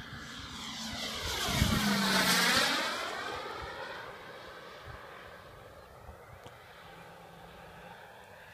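Radio-controlled Ultraflash jet model making a fast, low flyby. Its engine rush swells to a peak about two seconds in, with a sweeping pitch as it passes, then fades away as it climbs off.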